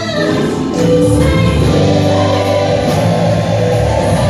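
Live gospel choir of men and women singing, with a woman singing lead into a microphone.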